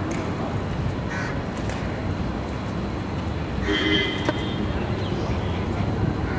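Busy street ambience: a steady low rumble of traffic with distant voices, and a crow cawing briefly about four seconds in.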